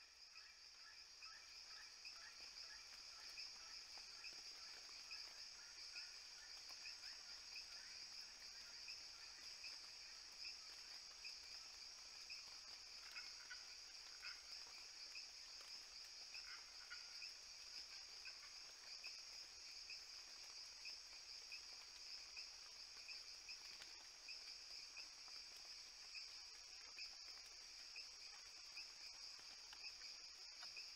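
Faint, steady chorus of insects with an even high-pitched trill, with a few soft chirps over it in the first seconds and again around the middle.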